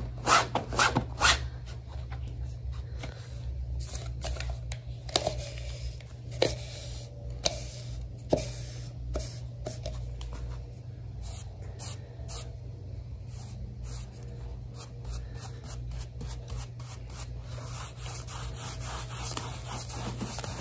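Paintbrush and cloth rubbing and scrubbing chalk paint into upholstery fabric in short, irregular strokes, with scattered sharp taps and clicks. A steady low hum runs underneath.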